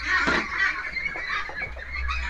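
A flock of white Peking meat ducks calling together in their pen: many overlapping quacks blending into a continuous chatter.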